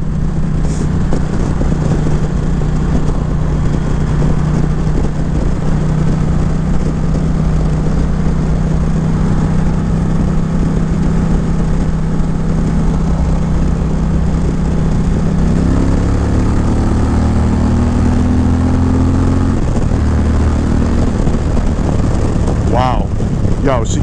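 Indian Challenger's liquid-cooled V-twin engine running at a steady cruise, heard from the rider's seat. About fifteen seconds in it opens up under hard acceleration, the rumble growing louder and rising in pitch, then drops back about five seconds later.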